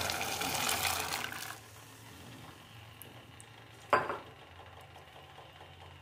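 Shelled green peas poured into a steel pot of boiling water: a splashing rush for about a second and a half, then a faint steady hiss. A single sharp knock about four seconds in.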